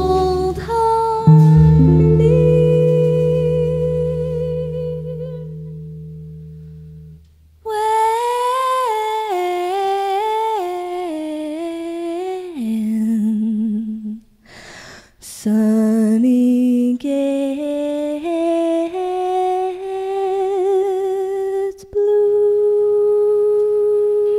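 A sustained chord with a low bass note rings and fades away over the first seven seconds. Then a female singer hums a wordless melody alone, with vibrato, pausing once in the middle and ending on a long held note.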